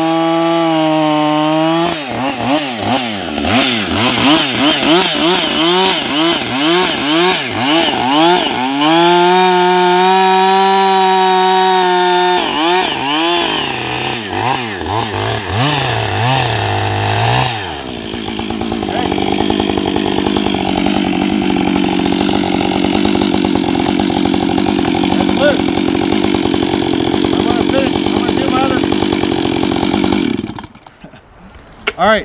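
Husqvarna chainsaw bucking a log, its engine pitch rising and falling rapidly as the chain bites into the wood and bogs down in the cut. About eighteen seconds in, the saw settles into a steady idle.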